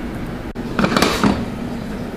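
A steady low hum with a short scraping, rustling burst about a second in, from handling at the salmon fillets as they are seasoned.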